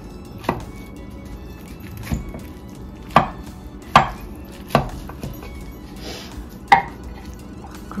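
A spatula pressed down through a baked hashbrown casserole to cut it into portions, its edge knocking against the bottom of a ceramic baking dish about six times at irregular intervals.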